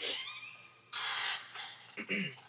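A distressed man breathing hard: two loud, harsh breaths about a second apart, the first the loudest and carrying a faint moan.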